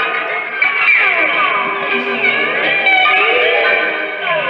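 Amplified prepared electric guitar played with objects pressed and worked against the strings, giving dense, overlapping tones that glide up and down in pitch.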